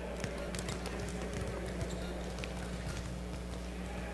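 Scattered light taps and thuds of volleyballs being served and bouncing on the court, mixed with players' footsteps, over a steady low hum and distant chatter.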